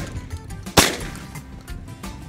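A single shotgun shot a little under a second in, fired at passing doves, with a short decaying tail. Background music plays underneath.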